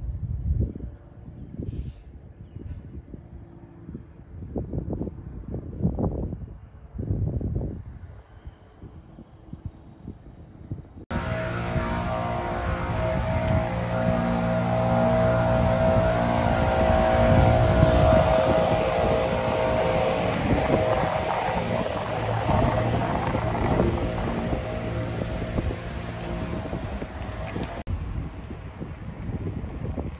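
Wind buffeting the microphone in gusts. About eleven seconds in it cuts suddenly to louder background music with sustained tones, which runs until near the end.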